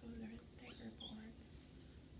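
Soft, short vocal murmurs, with a brief high squeak about a second in.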